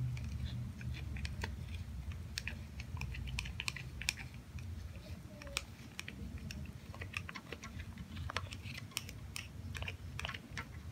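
A utensil scraping and tapping a small plastic cup of chocolate sauce, giving many small irregular clicks, over a steady low hum.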